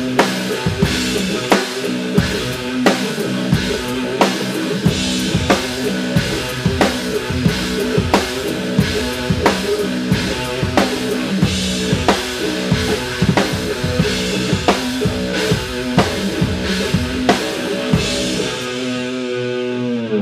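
A drum kit (bass drum, snare and cymbals) played live in a steady, driving groove over a backing track with held guitar notes. The music stops suddenly at the very end.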